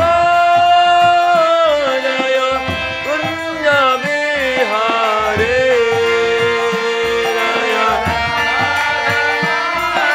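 Devotional kirtan: a male lead voice sings a long, ornamented melody with held notes and sliding pitch, over steady harmonium chords and regular mridanga drum strokes.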